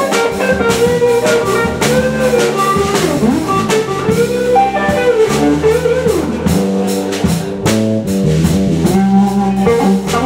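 Live blues band playing: an electric guitar takes a solo with bent notes, over electric bass, keyboard and drums keeping a steady beat.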